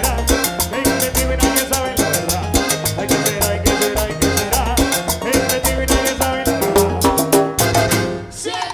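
A live Latin dance orchestra playing a tropical number, with congas and percussion over a pulsing bass line and a steady dance beat.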